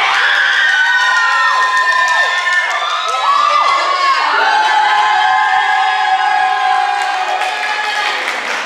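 Audience cheering loudly, with many voices whooping and yelling over one another in calls that glide up and down in pitch. The cheering breaks out suddenly at the start.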